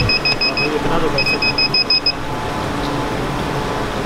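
Two quick runs of short, high electronic beeps, about seven beeps a second, in the first two seconds, over a steady murmur of store noise and faint voices.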